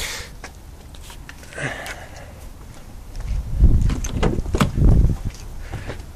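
Footsteps and soft clicks, then loud, irregular low thumps about halfway through as someone gets into a car's driver's seat. The engine is not yet running.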